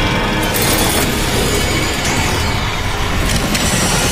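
TV channel ident music: dense electronic sound design with mechanical, ratchet-like clicking textures and sweeping whooshes, about half a second in and again near the end.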